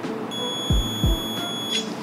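Handheld diamond tester pen giving one steady high beep for about a second and a half: its signal that the stone under its tip tests as diamond.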